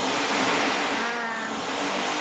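Steady rushing noise, with a brief faint voice about a second in.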